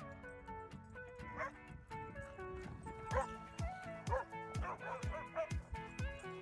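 Background music with held notes and a low beat, with several dog barks over it, mostly in the second half.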